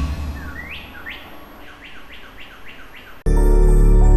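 Bird-like chirps from a TV station ident's sound design: a run of about eight quick rising calls, coming closer together, over a held music chord. Loud music cuts in abruptly near the end.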